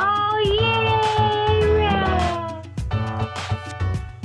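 A long drawn-out vocal cry, wavering at first and then sliding slowly down in pitch for almost three seconds, over background music with a steady beat.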